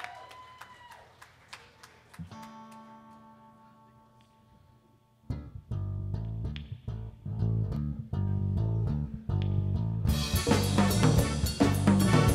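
Live band opening a song instrumentally: quiet at first, with faint regular ticks and a softly held chord, then bass and guitar come in loud with a rhythmic riff about five seconds in, and the full band with drum kit and cymbals joins about ten seconds in.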